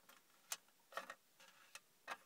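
A few faint, sharp clicks of small plastic toy soldier figures being picked up and set down on a hard surface: the clearest about half a second in, a quick pair near one second, and a lighter one near the end.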